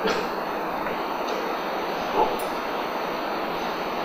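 Steady hissing room noise with no distinct events. A single soft spoken word comes about halfway through.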